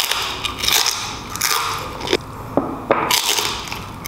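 Repeated crunching as crispy roasted lechon skin is bitten and chewed, a string of short crackly crunches.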